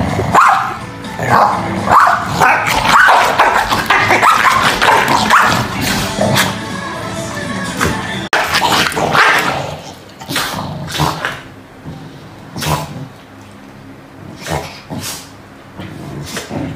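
Corgis barking at each other while play-fighting, over background music. The barking is dense through the first half, then comes as separate sharp barks.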